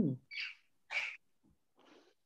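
A woman's short "mm" hum, falling in pitch, right at the start. Two brief soft hissing sounds follow within the next second, with a fainter one near the end.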